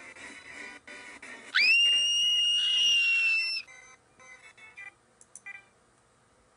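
Audio of a 'G Major' effect edit of a cartoon intro playing through a computer's speakers: quiet distorted music, then a loud, high whistle-like tone that slides up and holds for about two seconds before cutting off suddenly. A few faint clicks follow near the end.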